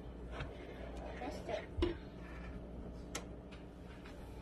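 A few light clicks and knocks of kitchen things being handled at a counter, with one dull thump just under two seconds in as the loudest.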